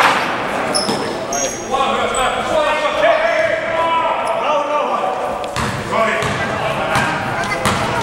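Basketball game sounds in a large sports hall: a basketball thudding on the court, with a few short high sneaker squeaks about a second in. A sharp knock comes right at the start, and further ball knocks come in the second half, all with the hall's echo.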